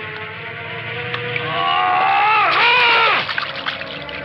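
Muffled, drawn-out cries through a gag, sliding up and down in pitch, loudest from about a second and a half in until about three seconds, over a low steady hum.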